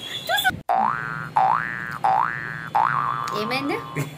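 Cartoon 'boing' sound effect added in editing: a rising pitched glide repeated four times, each about two-thirds of a second long, the last settling into a held tone, over a steady low hum.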